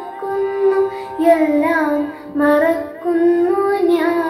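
A girl singing a Malayalam devotional song solo, holding notes and sliding between them in ornamented phrases, with short breaks between phrases.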